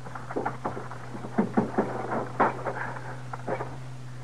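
Radio-drama sound effects: a handful of short, scattered knocks and scuffs of men moving about, over a steady low hum from the old recording.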